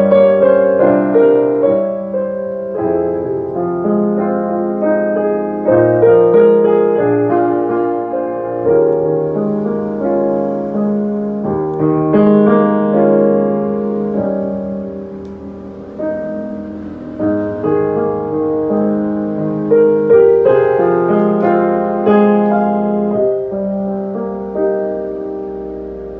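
Boston GP178 grand piano played with both hands: a continuous passage of melody over chords, growing softer toward the middle and building up again about two-thirds of the way through.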